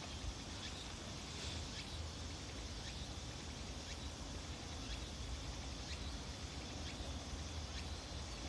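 Faint outdoor ambience: a steady hiss with some low rumble, and a very high-pitched insect chirp repeating about once a second.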